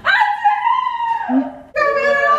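A girl's long, high-pitched cry, held and then falling in pitch, followed by a second drawn-out cry near the end.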